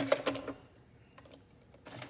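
A few light clicks and taps as a plastic drafting ruler is shifted on a drawing board, mostly in the first half second, then faint tapping with two small ticks near the end.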